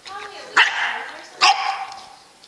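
English bulldog puppy barking twice, about a second apart, play-barking at its own reflection in a mirror.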